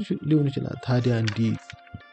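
A person's voice speaking over faint background music; the voice stops near the end, leaving only the music.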